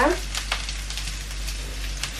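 Sliced pepper and mushrooms sizzling in hot olive oil in a frying pan, a steady sizzle with a light click about half a second in.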